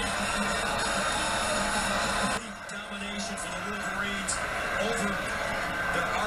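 Television broadcast sound of a football game: a commentator's voice over dense stadium crowd noise, which cuts off suddenly about two and a half seconds in. After that comes quieter speech with background music.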